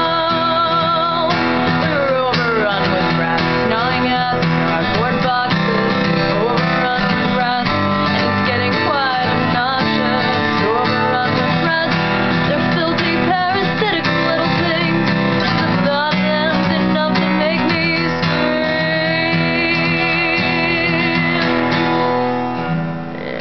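Acoustic guitar strummed steadily while a woman sings, holding long notes with vibrato near the start and again near the end.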